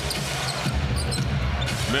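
Basketball being dribbled on a hardwood arena court, over a steady background of arena noise.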